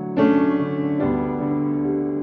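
Slow background music on piano or electric piano: sustained chords, a new one struck just after the start and another about a second in.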